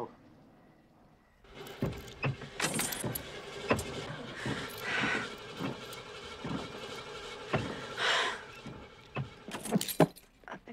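Car engine being cranked on the starter again and again without catching. The engine won't start. Rattling knocks run through the cranking from about a second and a half in.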